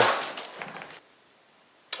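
A brief crunching clatter of debris that fades over about a second, then cuts off abruptly into silence.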